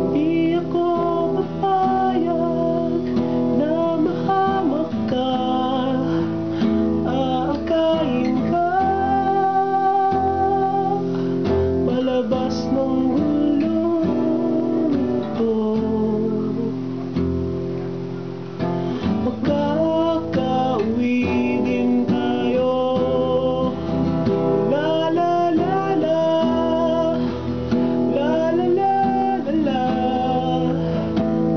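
A song: an acoustic guitar strummed under a voice singing a melody.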